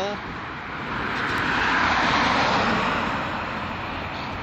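A motor vehicle passing by, its rushing noise swelling to a peak about two seconds in and then fading.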